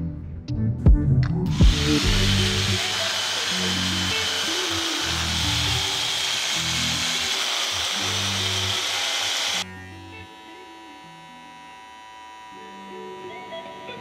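Handheld electric rug clippers running as they shear the yarn pile of a tufted rug: a steady, hissing whir that starts about two seconds in and cuts off suddenly about two-thirds of the way through. Before it come a few sharp snips of scissors cutting the rug backing, with background music throughout.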